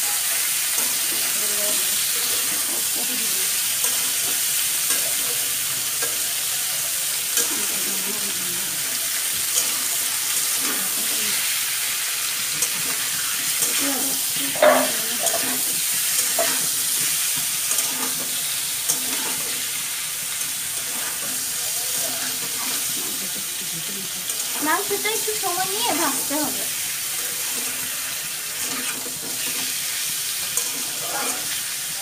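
Chicken pieces sizzling steadily as they fry in oil in a metal wok, with a metal spatula stirring and scraping against the pan in scattered clicks.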